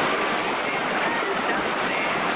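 Fast mountain river in high flow rushing over boulders: a steady, even wash of white water.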